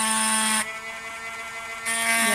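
Dremel Micro rotary tool with a diamond wheel point etching a glass, running with a steady high whine. Just past half a second in it drops much quieter, then comes back loud just before the end.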